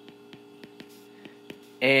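Steady low electrical hum on the recording, with faint small ticks of a stylus tapping on a tablet's glass screen while writing. A man's voice begins near the end.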